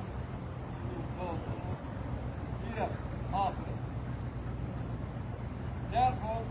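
Steady low engine hum of road traffic, with a few short, faint voices between.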